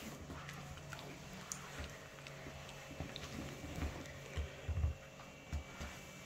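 Faint, scattered low knocks and bumps, several of them between about three and five and a half seconds in: objects being handled on a table.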